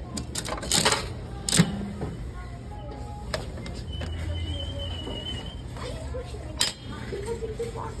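Metal clicks and clanks from a capsule toy vending machine's coin mechanism and prize-chute flap as a capsule is dispensed and taken out. The sharpest click comes about a second and a half in.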